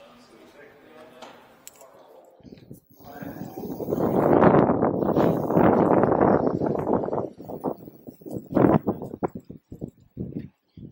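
Rough wind and rubbing noise on the microphone of a rider on an electric scooter, starting about three seconds in as the scooter gets moving. It is loud for a few seconds, then breaks into choppy gusts, with no motor whine standing out.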